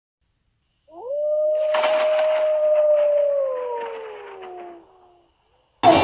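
A single wolf howl that rises quickly, holds one long note, then slides down in pitch and fades out about five seconds in. Band music cuts in abruptly just before the end.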